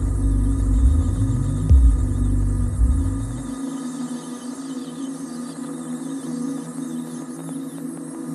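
Electronic drone score: a deep throbbing bass with repeated rising sweeps, over steady held tones. The bass cuts off suddenly about three and a half seconds in, leaving the steady hum of the held tones.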